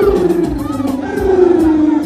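Dancehall music over a sound system: a steady kick-drum beat under one long held note that slides slowly down in pitch, with crowd noise.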